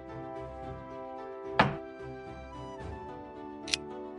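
Background music with steady held tones. About one and a half seconds in comes a single loud thunk, and near the end a short sharp click: the xiangqi board's move sound effects as a piece is set down and the next one is picked up.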